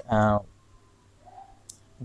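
A man's drawn-out 'uh', then a quiet pause in the room with one sharp, faint click about three-quarters of the way through.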